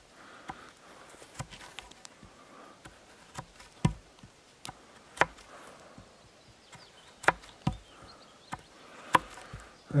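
Knife blade cutting into a wooden pole: irregular sharp cuts and scrapes of steel through wood, one or two a second with short pauses between.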